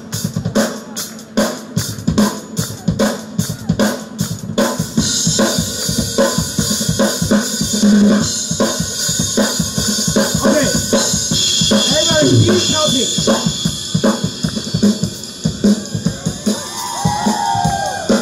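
Live percussion on a drum kit and Korean traditional drums: rapid, even drum strokes, joined by a continuous cymbal wash about five seconds in. Near the end a performer's voice comes over the microphone above the drumming.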